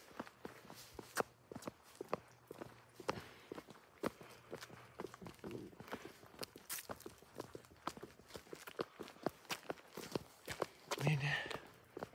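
Footsteps of a person walking at a steady pace on a concrete sidewalk. A brief voice is heard about a second before the end.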